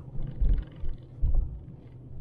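Low rumble of a vehicle on the move, with two louder low buffets of wind on the microphone about half a second and just over a second in.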